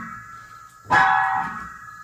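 Old upright piano: a chord struck about a second in, ringing and slowly fading. Before it, the tail of an earlier chord dies away.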